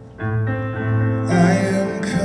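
Keyboard playing slow, sustained piano chords, with a man's singing voice coming in about halfway through, the opening of a slow ballad.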